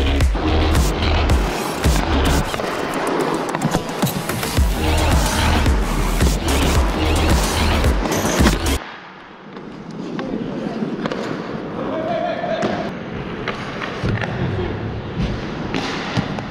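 Electronic background music with a steady bass beat, cut off suddenly about nine seconds in. The live rink sound of an ice hockey game follows: skates scraping on the ice and sharp knocks of sticks and puck.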